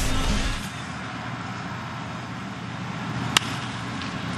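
Steady ballpark background noise with a low rumble at the start, then a single sharp crack about three and a half seconds in: a baseball bat meeting a pitch and sending it on the ground.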